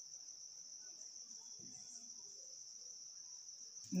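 Faint, steady high-pitched chirring of crickets, with no break.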